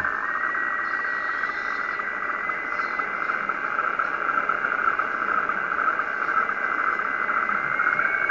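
Kenwood R-2000 shortwave receiver playing a continuous rasping digital data tone, with a thin steady whistle just above it. The operator takes it for an image transmission, possibly weather satellite pictures.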